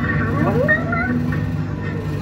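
Coin-operated Bob the Builder Scoop kiddie ride running, its drive motor giving a steady low hum. A short rising, cry-like sound comes about half a second in.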